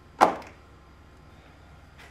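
A single sharp thunk as a white plastic bucket of ground apple pomace is set down, followed by a short decay.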